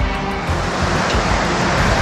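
Background music over a loud rushing wind noise on the microphone, swelling about a second in.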